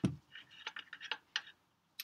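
A handful of faint, light clicks of a metal wrench being fitted onto the oil drain plug of a car's oil pan.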